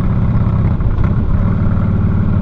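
Harley-Davidson Softail Springer's V-twin engine running steadily under way, a continuous low engine note.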